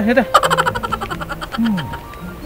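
A rapid, evenly spaced run of sharp clicks, about fifteen a second, fading out over about a second, followed by a short falling sweep.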